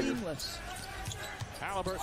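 A basketball being dribbled on an arena court, heard faintly through the game broadcast's sound, with voices at the start and near the end.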